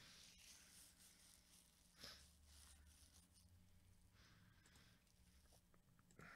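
Near silence: faint room tone, with one soft click about two seconds in.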